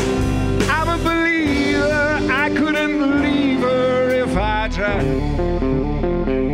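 Live rock band playing: an electric guitar lead with bent, wavering notes over bass and drums. About five seconds in it gives way to a choppy, steady chord rhythm.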